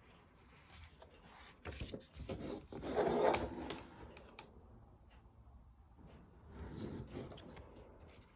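Paper pages of a colouring book being turned by hand: a rustling, sliding swish about two to four seconds in, the loudest, and a softer one about seven seconds in.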